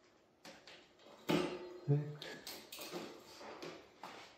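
Sharp clicks and light metallic clatter from a torque wrench pushed against a bicycle's rear derailleur cage to test the derailleur's clutch. There are several clicks in an uneven series, the loudest a little over a second in.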